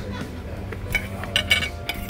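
Metal cutlery clinking against a plate a few times in the second half, over a steady low hum.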